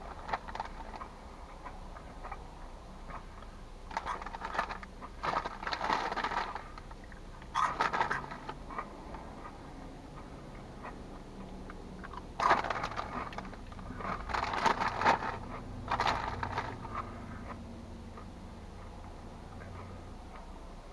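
Crunchy Cheddar Jalapeño Cheetos being chewed: spells of crisp crunching, a group of them a few seconds in and another in the second half, with quieter pauses between.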